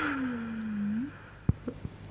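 A woman's closed-mouth hum, about a second long, dipping in pitch and then rising at the end, followed by a few short soft clicks.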